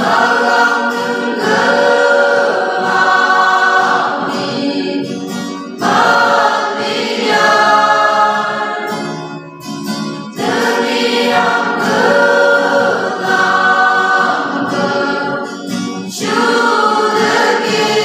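Mixed youth choir singing a Christian song in the Phom Naga language with acoustic guitar accompaniment. The singing comes in phrases of a few seconds, with brief breaks between them.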